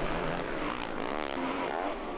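Motocross bike engine revving on the track, its pitch swinging up and down about a second in, then running steadier.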